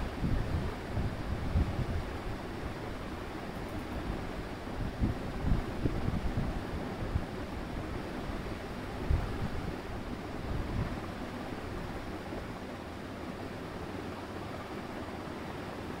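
Steady background hiss with irregular low rumbles and bumps on the microphone for about the first eleven seconds, then only the steady hiss.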